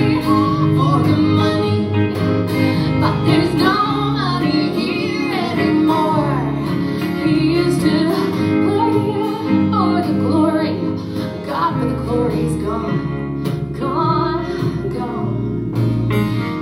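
Live country band playing an instrumental passage: electric guitar over strummed acoustic guitar and upright double bass.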